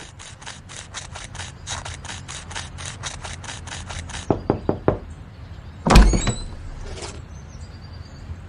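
Quick footsteps, about five a second for roughly four seconds, then a few knocks on a wooden front door and a loud thump about six seconds in as the door is opened.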